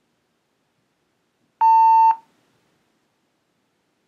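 A single electronic beep, a steady mid-pitched tone lasting about half a second, coming about one and a half seconds in. It is the stop signal of a stop-signal task, the cue to withhold the hand response.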